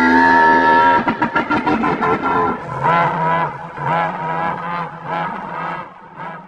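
A young tyrannosaur's cry, a film creature sound effect: one long held call, then shorter wavering calls about once a second, fading near the end.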